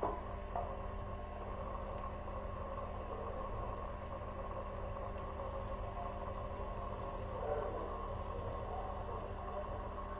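Steady low hum and hiss of room noise, with a couple of faint knocks just after the start.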